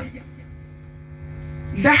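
Steady electrical hum with several even overtones from the microphone's sound system, heard in a pause of speech; a woman's voice comes back near the end.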